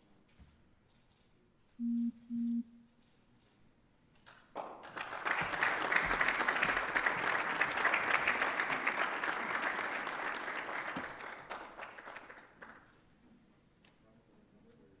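Two short, low electronic beeps about two seconds in, then an audience applauding for about eight seconds, swelling quickly and fading out near the end.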